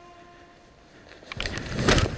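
Faint steady background music fades out early, then, after a quiet moment, about a second in comes a loud, irregular clatter of sharp clicks and knocks close to the microphone, loudest just before the end.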